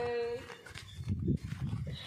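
A man's voice chanting the Islamic call to prayer (azan): a long held note ends about half a second in. After a short gap filled with low rumbling noise, the next phrase begins to rise right at the end.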